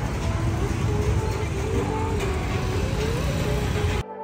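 Busy street ambience: a steady low rumble of motorbike and traffic noise, with fragments of people's voices nearby.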